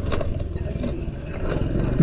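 Motor scooters running close by, a low steady engine drone.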